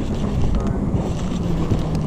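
Wind rumbling on the camera microphone over open water, with a faint steady low hum underneath.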